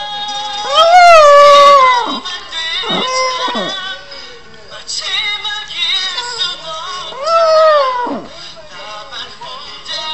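Small white puppy howling in long, wavering notes that rise and fall. The loudest howl comes about a second in, with shorter falling ones around three seconds and further howls around five and seven seconds in.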